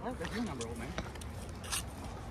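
Faint, distant voices talking in the first half-second, with a few light clicks and a short hiss near the end.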